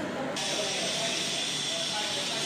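Roll-to-roll heat transfer sublimation machine running: a steady hiss of machinery and cooling fan, with indistinct voices in the background.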